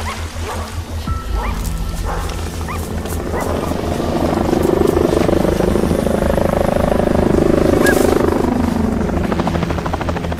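Helicopter sound effect, a fast, steady rotor chop that swells louder through the middle and eases off near the end, over background music.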